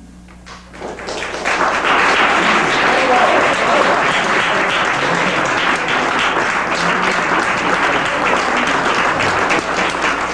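Audience applauding, the clapping building up over about the first second and then holding steady and loud.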